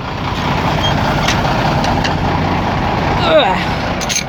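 Truck engine running close by: a steady rumble and hum that builds over the first second and then holds. A brief voice cuts in near the end.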